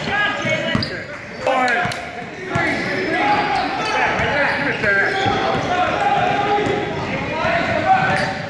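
Indoor youth basketball game: spectators and players calling out and shouting over a basketball bouncing on the hardwood floor, all echoing in a large gym. A few sharp bounces stand out in the first couple of seconds.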